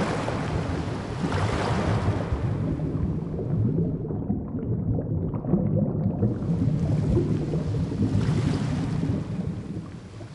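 Ocean water rushing and washing like surf, with a steady low rumble. For about two and a half seconds in the middle the sound goes dull and muffled, like a waterproof camera dipping below the surface among bubbles, then opens out into full rushing water again.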